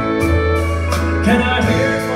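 Country band playing live: pedal steel guitar, electric guitar, bass and drums, with held notes over a steady bass line and drum hits.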